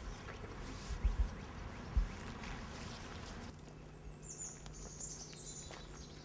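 Faint outdoor background noise with a few low bumps. About three and a half seconds in, the background changes abruptly to a steady low hum with a thin high whine above it.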